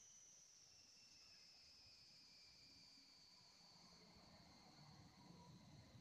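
Faint, high-pitched electronic whine from a high-voltage capacitor charger, sinking slowly in pitch as the capacitor charges.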